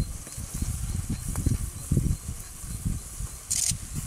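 Wind buffeting the microphone in irregular low gusts on an open plain, with a short sharp hiss about three and a half seconds in.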